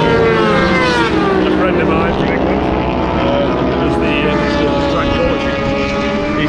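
Engine of a vehicle lapping the race circuit, its pitch sliding down as it goes past, then settling into a steadier note.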